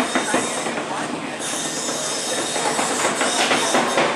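Beetleweight combat robots fighting: a continuous clatter of knocks and scraping as the robots hit each other and skid across the arena floor, with a steady high whine underneath.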